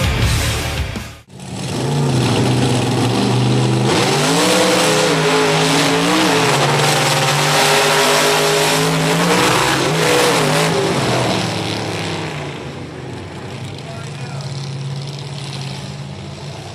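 Rock music cuts off about a second in, and then two monster truck engines run at full throttle in a drag race, their pitch climbing, dipping and climbing again, before fading toward the end.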